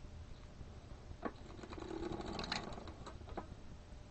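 Circular sock machine cranked briefly: a sharp click about a second in, then about a second and a half of rapid clicking and rattling from the needles running through the cams, ending with a couple of single clicks.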